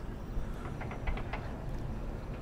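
Quiet outdoor background noise: a steady low rumble with a few faint clicks.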